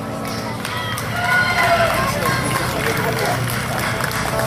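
A band's final chord stops at the start, followed by cheering: voices shouting and whooping from about a second in, getting louder.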